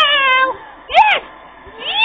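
A cat meowing three times, loud and close: a falling call at the start, a short one about a second in, and a longer rising-and-falling one near the end.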